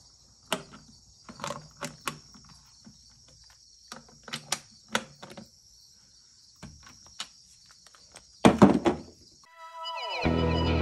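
Scattered metal clicks and knocks of a hand socket driver and its socket working loose the nuts on a Stromberg carburettor's air filter cover, with a steady high insect buzz behind. A louder cluster of knocks comes near the end, then music starts.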